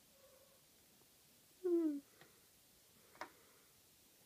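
Maine Coon kitten giving one short meow, falling slightly in pitch, about two seconds in. A brief tap follows about a second later.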